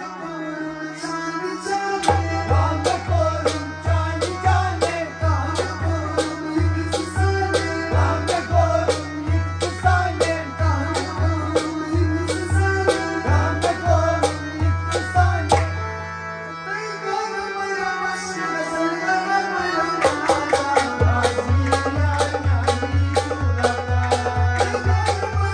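Instrumental passage of a folk song: a harmonium plays the melody over a hand drum keeping a steady low beat of about one and a half strokes a second. The drum drops out for a few seconds past the middle, then comes back in.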